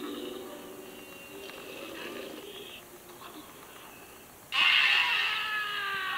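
Film soundtrack: low, quiet sounds, then about four and a half seconds in a man's sudden loud cry that falls in pitch.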